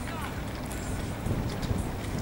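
Outdoor wind rumbling on the microphone, with faint voices of people in the distance.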